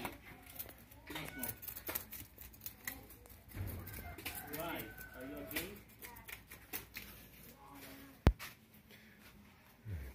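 Knife scraping scales off tilapia over a basin, a run of short scrapes and clicks. One sharp click about eight seconds in is the loudest sound.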